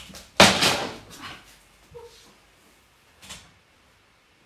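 A loud knock or thump with a rustling tail about half a second in, then a few lighter knocks, as someone moves about close to the microphone.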